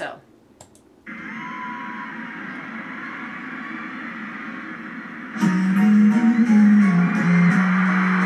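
Live concert recording playing back: a large arena crowd's steady cheering starts about a second in, and about five seconds in the song's music comes in over it with a loud held low note and a light regular tick.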